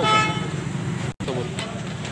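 A vehicle horn toots once, briefly, in the first half second, over a steady low hum. The sound drops out for an instant just after a second in, and voices follow.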